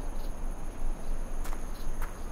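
Outdoor ambience of a steady, high insect drone like crickets over a low wind rumble, with a few faint ticks.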